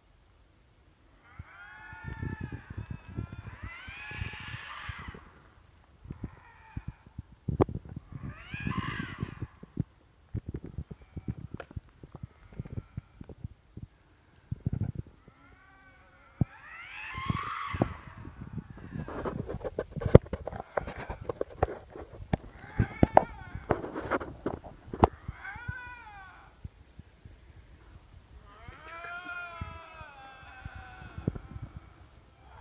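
Wild Canada lynx screaming in the woods: several bouts of drawn-out yowls, each a second or two long and rising and falling in pitch. Knocks and rustling from a handheld phone being carried run underneath.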